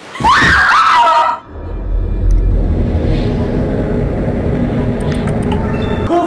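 A high, rising scream about a second long, then a low, steady droning rumble of tense film score with a few faint clicks near the end.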